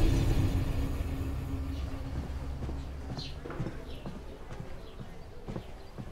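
A low, sustained background score fades out over the first few seconds. What follows is faint ambience with scattered light knocks and a brief high chirp, like a small bird, about three seconds in.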